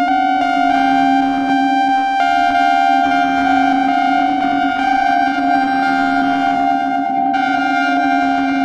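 Ciat-Lonbarde Tetrax four-oscillator analog synthesizer played through a Chase Bliss Mood Mk II pedal in an ambient improvisation: a steady low drone tone held throughout, with brighter, overtone-rich tones above it that step to new pitches every second or so.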